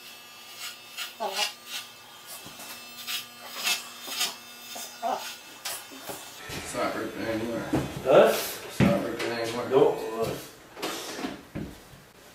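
Corded electric hair clippers buzzing steadily as they cut hair. A voice talks over them from about halfway in.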